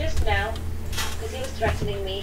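A few sharp clicks and knocks over a steady low electrical hum, with a short bit of faint voice at the start.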